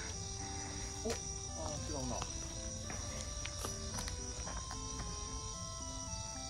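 Crickets and other night insects chirring in a steady, high-pitched chorus, under soft background music of held notes.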